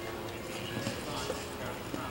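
A horse's hooves striking the sand arena footing as it lands from a jump and canters on: a few separate hoofbeats about half a second apart, with background music and voices.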